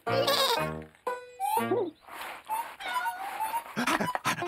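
Cartoon sheep bleating a few short times over background music.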